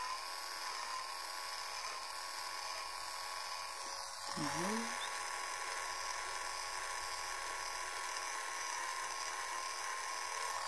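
Electric face-cleaning brush buzzing steadily on its first, lower speed, its pitch dipping slightly now and then as the brush is pressed. A short hum of a voice comes about four and a half seconds in.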